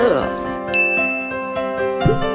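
A bright single ding sound effect strikes about three quarters of a second in and rings on, over soft background piano music.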